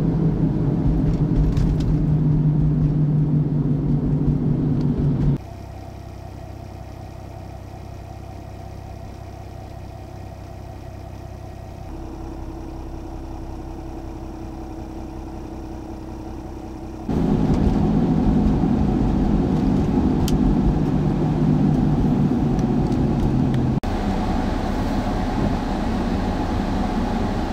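Heavy snowplow truck engines running close by, a steady low hum, loud for the first five seconds and again from about seventeen seconds on. In between, a sudden cut to a much quieter steady background hum.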